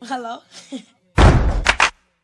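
A brief voice, then a sparse run of heavy percussive hits: a loud deep thud about a second in, followed by two quick sharp knocks. This is the opening beat of a hip-hop track.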